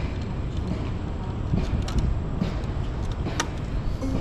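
Steady low street rumble, with a short, sharp ping about three and a half seconds in from the parked Cake Kalk electric motorcycle. The bike repeats this ping while switched on as its sign that it is on and at 'idle', here about six seconds apart with nobody on it.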